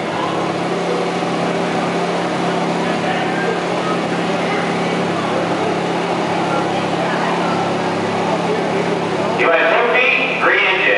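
Tractor engine idling steadily, with a murmur of crowd chatter over it.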